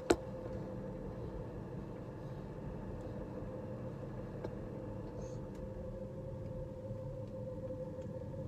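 Steady hum and low rumble inside a moving gondola cabin, with a single held tone running through it. A sharp knock right at the start.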